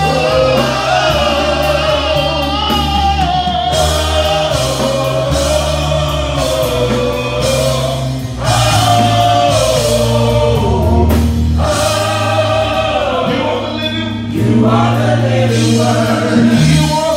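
Gospel praise team of several voices singing long, held and gliding lines together over a band with a steady bass line.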